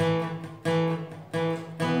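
Acoustic guitar strummed in a steady rhythm, about one strum every two-thirds of a second, sounding two-string power chords on the third and fourth strings, E and A shapes.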